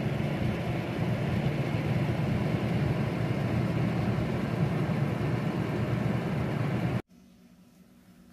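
Stainless-steel food dehydrator's rear fan running with a steady, low hum and airflow, cutting off suddenly about seven seconds in.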